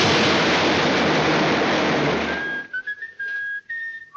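Cartoon crash sound effect of the anvil hitting the ground: a loud rushing noise that cuts off about two and a half seconds in. It is followed by a few short, steady whistled notes with small slides between them.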